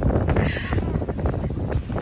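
Wind buffeting the phone's microphone: a steady, gusty low rumble. A brief higher sound comes about half a second in.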